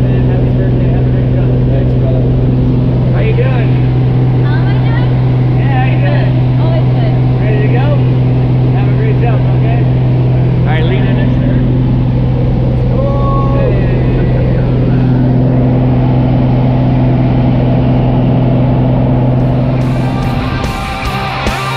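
Propeller jump plane's engine drone, heard from inside the cabin in flight: loud and steady, one low hum with a higher overtone. Indistinct voices are heard over it now and then.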